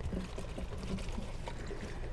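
Grey water pouring and trickling faintly down a corrugated RV sewer hose into a portable sewer tote as the hose is lifted, draining the last liquid out of the hose.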